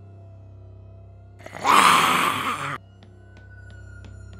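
Quiet eerie background music, then a loud, harsh zombie screech about a second and a half in, lasting just over a second. Faint regular clicks follow near the end.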